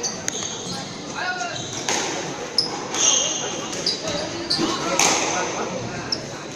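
Squash rally: the ball hit sharply off rackets and the walls several times, the loudest hits about three and five seconds in, with short high squeaks of court shoes on the wooden floor between them.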